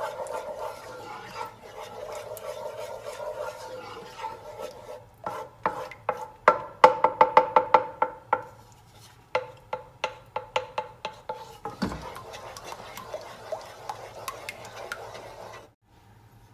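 Wooden spoon stirring a thick white sauce in a metal saucepan, scraping around the pan, with runs of quick knocks of the spoon against the pan in the middle.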